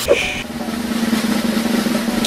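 A fast snare drum roll with a steady low note held beneath it, an edited-in suspense effect leading up to a prank.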